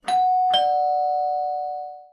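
Two-note ding-dong doorbell chime sound effect: a higher ding, then a lower dong about half a second later, both notes ringing on and fading out.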